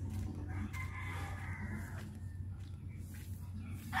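A rooster crowing once, starting about half a second in and lasting about a second and a half, over a steady low hum.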